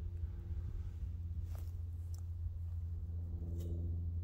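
A steady low mechanical hum with a few faint clicks over it.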